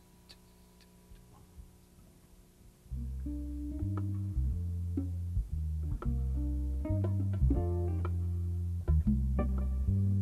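A jazz waltz begins about three seconds in after a near-quiet start: an electric bass plays loud, low notes while a guitar plucks chords and single notes above it.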